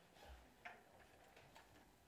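Near silence: room tone with a faint soft thump and a sharper faint click early on.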